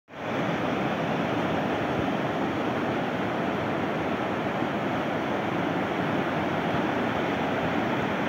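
A fast, muddy river rushing over rapids and a stony bed, a steady noise of running water.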